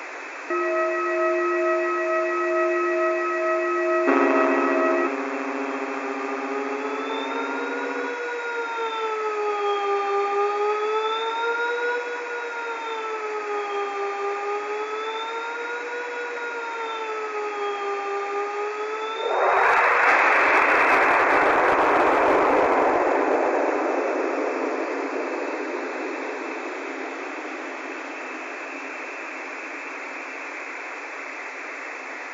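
Synthesized electronic tones over a constant static hiss: a few steady tones, some beeping on and off, then several tones warbling slowly up and down, about one swing every two seconds. About two-thirds of the way through, a sudden loud blast of noise cuts in and slowly fades back to the hiss. The tones appear made to be read as a hidden pattern in a spectrogram.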